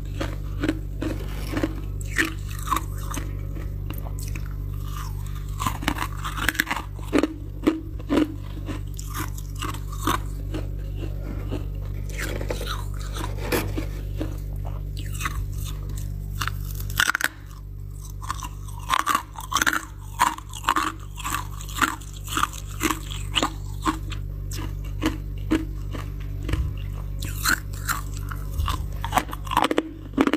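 Freezer frost being bitten and chewed close to the microphone: irregular crisp crunches, several a second, broken by short pauses. A low steady hum underneath drops away suddenly about halfway through.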